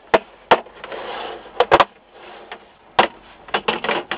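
Plastic snap-fit catches of an LCD monitor's front bezel clicking loose as the bezel is flexed and pried off by hand: a series of sharp plastic snaps at irregular intervals, with a brief stretch of plastic rubbing about a second in.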